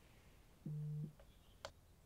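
A short, steady, low electronic tone that starts and stops abruptly and lasts under half a second, followed about half a second later by a faint click.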